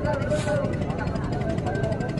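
Cruise boat's engine running steadily underway, a continuous even rumble, with the murmur of passengers' voices in the background.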